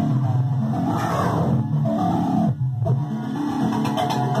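Access Virus TI synthesizer playing a patch: a low, buzzy line of quick, repeating notes that changes pitch every fraction of a second. The sound briefly thins and dips a little past the middle, then carries on.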